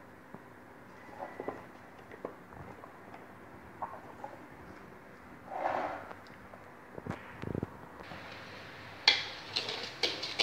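Faint scattered knocks and rustles of kitchen handling. From about nine seconds in, a wooden spoon clatters and scrapes in a pot as stirring of blended pineapple and sugar begins.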